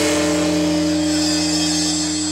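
A live rock band's closing chord held steady after the drums stop, the sustained tone of a Hammond organ and electric guitar ringing on and slowly fading.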